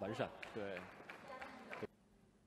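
Men's voices, with a few sharp clicks among them; the sound cuts off abruptly near the end.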